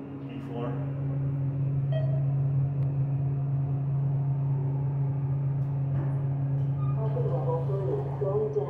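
Steady low hum and rumble inside a thyssenkrupp traction elevator car as it travels, growing louder about a second in.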